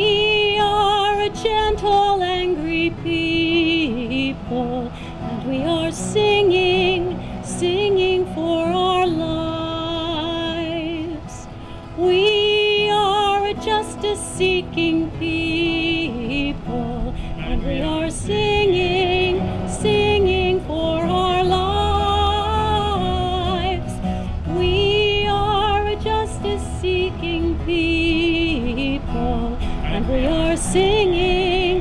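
A woman singing a slow song with vibrato on long held notes, accompanied by strummed acoustic guitar.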